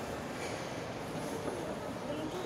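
Steady background din of a shopping mall interior, with faint distant voices in the mix.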